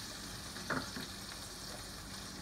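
Brussels sprouts sizzling steadily in hot avocado oil in a frying pan, with one brief louder sound a little under a second in.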